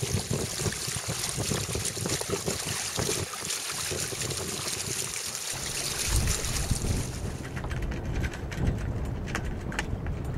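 Water rushing and splashing along the hull of a sailing boat under way, the bow wave slapping past the hanging fenders, with wind buffeting the microphone. The rushing hiss drops away near the end, leaving mostly low wind rumble.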